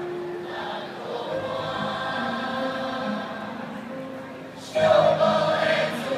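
A large group of voices singing together as a choir, holding long notes; the singing comes in much louder near the end.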